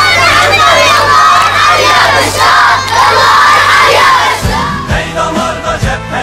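A crowd of children shouting and cheering together. About four and a half seconds in, the shouting gives way to music with a low beat.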